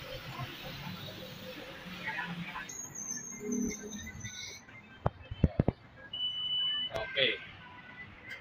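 Tyre-shop work: a cluster of sharp knocks about five seconds in as a wheel and tyre are handled at the car, then a short, steady, high-pitched beep lasting under a second.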